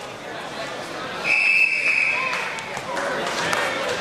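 Gym crowd of spectators talking and calling out at a wrestling match. A single steady high whistle blast, lasting about a second, starts about a second in and is the loudest sound.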